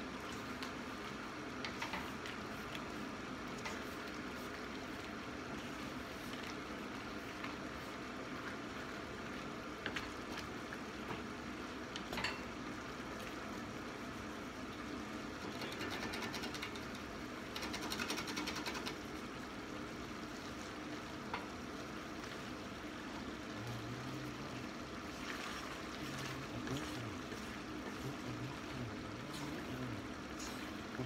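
Penne and sausage simmering in a reducing broth gravy in a stainless steel skillet, a steady bubbling sizzle as the water boils off. It is stirred with a wooden spatula that knocks against the pan a few times, and the sound is louder for a couple of seconds past the middle.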